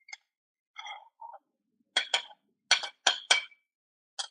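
Metal spatula clinking against a ceramic plate and frying pan as food is scraped from the pan onto the plate: a few soft scrapes, then five sharp clinks in quick succession in the second half.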